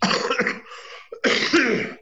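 A man coughing twice, two rough bursts about a second apart.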